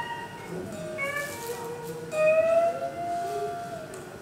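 Live blues band playing a slow blues, with an electric guitar taking a fill of held, bending notes between the vocal lines. One long note is held through the second half.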